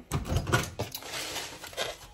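Close rustling with quick small clicks and knocks, the sound of things being handled at a kitchen stove. A few heavier low knocks come in the first half second.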